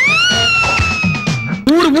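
A single long, high-pitched wailing tone that climbs steeply at the start and then sags slowly for about a second and a half, cutting off just before a man starts speaking.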